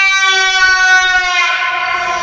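A long, steady horn blast played through a large DJ sound system, cutting off about a second and a half in, with no bass under it.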